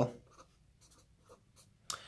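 Felt-tip pen writing a word on paper, heard as a few faint, short strokes.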